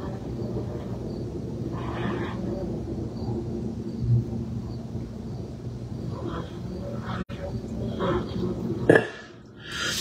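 A steady low mechanical hum, with a few faint short breathy sounds over it.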